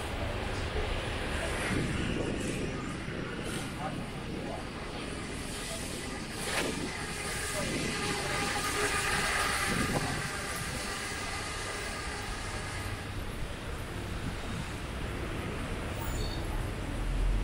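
City street ambience: a steady hum of traffic with vehicles and scooters passing, and voices of people nearby.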